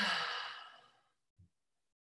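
A woman sighs out loud, a breathy exhale with a short voiced start that fades away over about a second. A faint soft thump follows.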